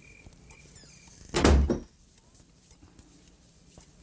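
Crickets chirping faintly in the first second, then a door shut with a single heavy thud about one and a half seconds in.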